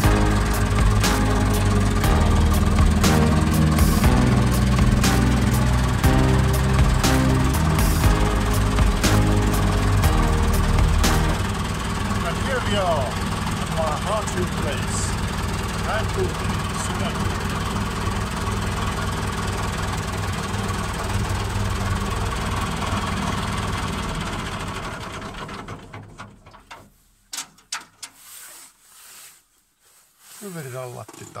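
Background music with a steady beat for the first eleven seconds, then a David Brown tractor engine running steadily, heard from inside the cab, fading out about twenty-five seconds in.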